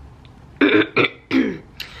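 A woman clearing her throat with short coughs, three in quick succession starting about half a second in; her voice is worn out from talking a lot.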